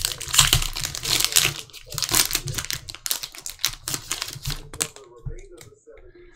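Foil trading-card pack wrapper being torn open and crinkled: a dense run of crackling that thins out about five seconds in, followed by lighter handling of the cards.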